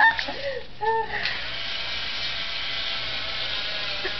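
A small electric motor starts about a second in and whirs steadily as a powered tape measure runs its blade out. A brief exclamation comes just before it.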